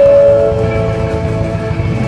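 Live rock band playing: a loud sustained note rings out at the start and slowly fades over guitars, bass and drums.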